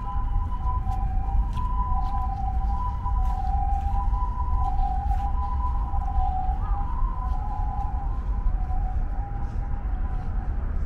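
An ambulance's two-tone hi-lo siren, the Japanese 'pii-poo', switching back and forth between a higher and a lower steady note several times over a low rumble.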